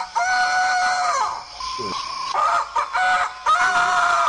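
Rooster crowing: several long cock-a-doodle-doo calls in a row.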